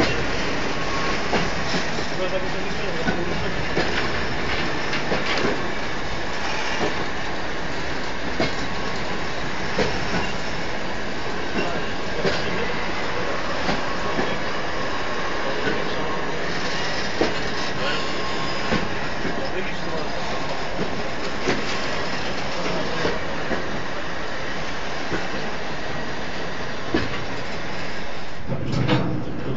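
Freight train of tank wagons rolling past close by: a steady rumble of steel wheels on rail, with a clack from the wheels over the rail joints about every second.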